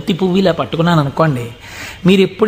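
A man speaking in Telugu, in a continuous flow of short phrases.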